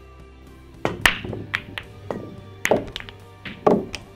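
Billiard balls clacking on a pool table: a sharp crack about a second in as the cue ball hits the racked balls, then about seven more sharp clacks at irregular spacing as the balls scatter and collide.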